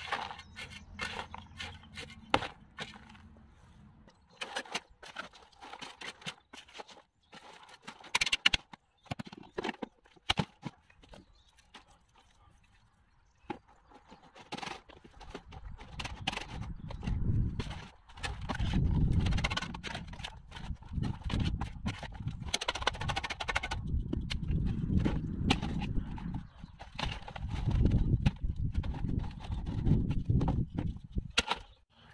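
A spade knocking and scraping in a plastic tub of manure and charcoal, with scattered sharp clicks. From about halfway, a wire-mesh garden sieve is worked over a plastic tub as soil and manure are rubbed through it by a gloved hand: a low scraping rumble with a continuous rattle of small clicks.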